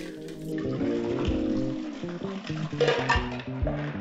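Background music over a cocktail being thrown: liquid poured in a long falling stream from one metal shaker tin into another, splashing into the tin.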